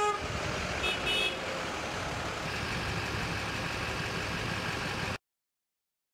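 Tow trucks driving past in a convoy, engines running steadily, with a horn toot right at the start and a shorter, higher-pitched toot about a second in. The sound cuts off suddenly about five seconds in.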